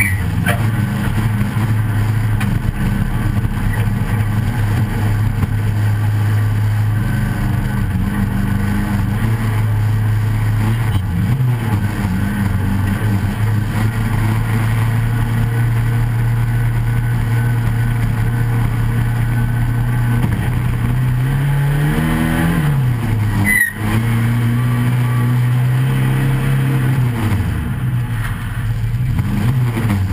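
Racing stock car's 1300 cc engine running hard under load, heard from inside the stripped cabin, holding a steady pitch for most of the time. In the last third the revs rise and fall a few times, with a brief break in the sound partway through.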